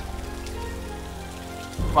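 Soft background music of sustained held chords under a steady hiss, with a man's voice starting just at the end.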